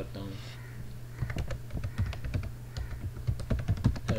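Typing on a computer keyboard: a run of irregular keystroke clicks as a word is typed, over a steady low hum.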